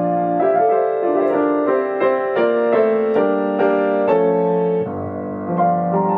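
Grand piano played solo: a steady flow of single notes over held lower tones, changing about three times a second, with a brief quieter moment near the end.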